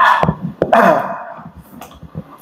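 A man mimicking scuba-tank breathing with his mouth: two loud, breathy hissing breaths, the second about two-thirds of a second in, tailing off.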